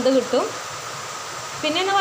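Squares of rava cake deep-frying in hot oil in a pan, a steady sizzle. A woman's voice speaks over it briefly at the start and again near the end.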